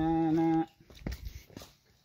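A long, steady held note from a man's singing voice that stops about two-thirds of a second in. Only faint clicks follow.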